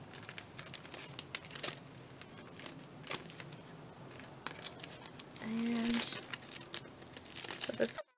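Clear plastic packaging of paper craft tags being torn open and crinkled by hand: scattered sharp crackles, with a louder stretch of crinkling about five and a half seconds in. A brief murmur from a voice comes at the same moment.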